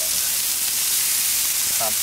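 Chicken breasts and vegetables sizzling in oil on a hot Blackstone flat-top griddle: a steady, high hiss.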